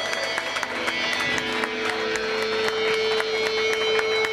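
Live rock band playing loud, with electric guitars, bass and drums over a steady cymbal beat; a long held note comes in about a second in.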